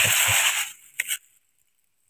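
Plastic fruit-protection bag crinkling as a hand works inside it around rose apples on the tree, followed by two short clicks about a second in.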